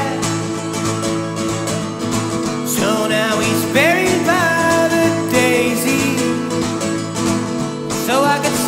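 Live solo acoustic guitar, plucked in a steady country-folk pattern, under a man's singing voice that holds a long note about four seconds in.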